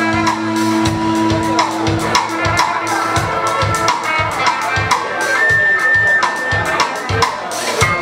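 Live rock band playing: a drum kit keeps a steady beat under guitars, bass and horns, with one high note held for about a second just past the middle.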